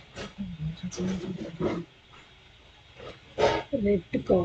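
People's voices talking indistinctly, with a louder voice near the end.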